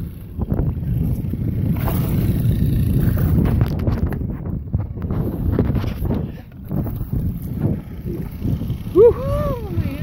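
Steady low rumble with repeated knocks and rubbing as a handheld phone and an aluminium-handled landing net are handled in a boat, and a short drawn-out vocal exclamation about nine seconds in.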